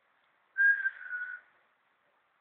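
A person whistling two short, clear notes, the second a little lower than the first.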